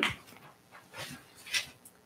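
Sheets of paper rustling as pages are turned over at a lectern, picked up by the lectern microphone as a few short, soft rustles.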